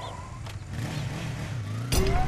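Vehicle engine sound effect running, its pitch wavering and gliding up and down, with a sudden loud hit just before the end.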